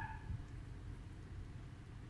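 Faint steady low background hum, with a brief short tone right at the start.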